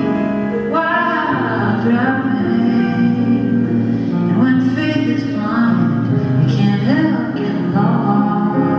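Live solo performance: grand piano chords with a man singing long, sliding phrases over them.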